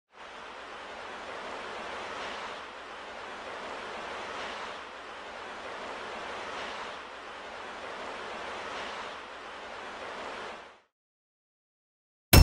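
Soft rushing noise, like surf, swelling and easing about every two seconds, then cutting off suddenly to silence near the end.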